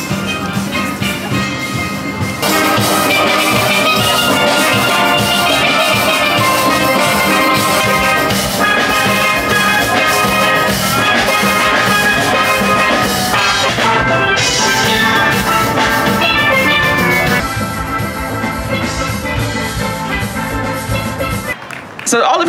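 A steel band playing live: many steelpans carrying the tune together over a drum beat.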